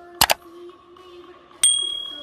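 Subscribe-button sound effect: a quick double mouse click, then about a second and a half in a bright notification bell ding that rings on and fades.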